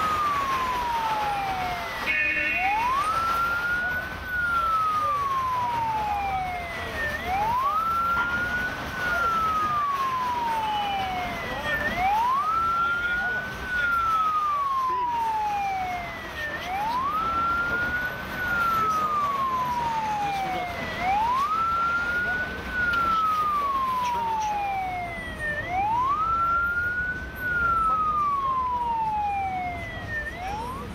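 Police car siren wailing. Each cycle climbs quickly and then falls slowly over about four seconds, repeating steadily about every five seconds, some six times over.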